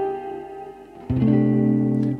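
Electric guitar picked: a note rings and fades, then a lower note is picked about a second in and left to sustain.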